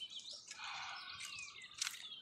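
Birds chirping, with two falling whistled notes in the second half, and a single sharp click near the end.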